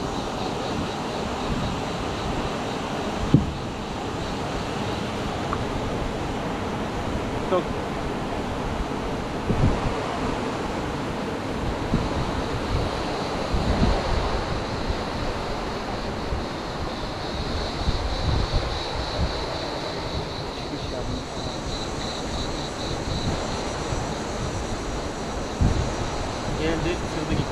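Wind buffeting the microphone over the steady rush of flowing stream water, with a single sharp click about three seconds in.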